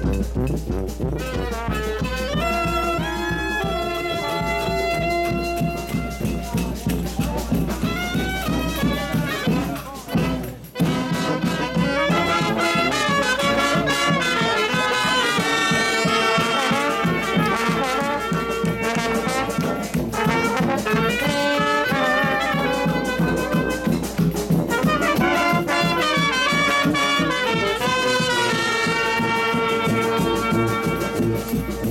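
Street brass band playing a lively tune on the march: saxophone, clarinet, trumpets and sousaphone over a steady beat, with a short break about ten seconds in.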